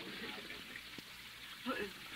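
Faint, steady splashing of a garden fountain, a radio-drama water sound effect, with a brief murmur of a voice near the end.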